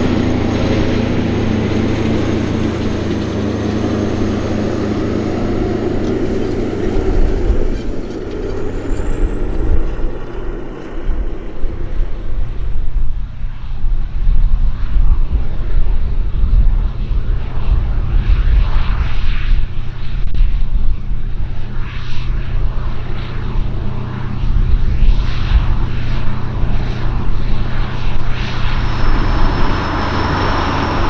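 Kirovets K-700A tractor's YaMZ-238 V8 diesel running steadily close by. About a quarter of the way in the sound changes to the tractor at work, its engine under load pulling a disc cultivator through stubble, with a rougher, uneven rumble whose loudness rises and falls.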